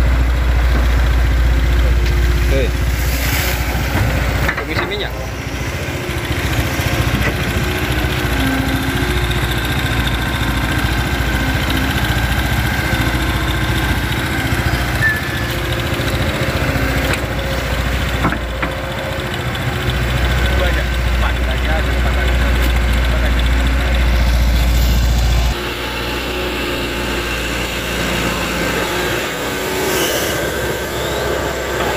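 Hitachi Zaxis hydraulic excavator's diesel engine running steadily under work as the machine digs and swings mud to fill a ditch. The low rumble drops off suddenly near the end.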